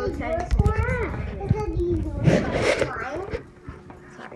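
A girl's excited wordless exclamations, her voice rising and falling, with a louder breathy cry a little past the middle.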